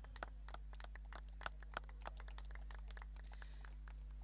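Faint, scattered hand claps from a few people, thinning out after about three seconds, over a steady low electrical hum.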